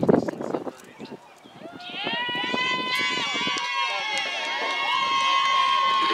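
A group of voices chanting a drawn-out cheer together, starting about two seconds in and holding its long notes steadily.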